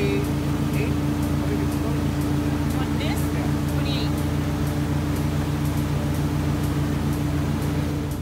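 A fishing boat's engine running steadily under way, a constant low hum with wash noise over it. A few brief voices are heard faintly over it.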